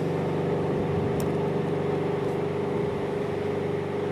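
A steady low mechanical hum made of several held tones.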